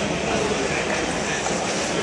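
Steady din of a large, busy hall: a dense wash of noise with indistinct voices in it.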